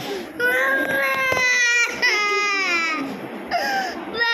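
A young girl crying in distress as blood is drawn from her arm with a syringe: two long wails, then a short cry near the end.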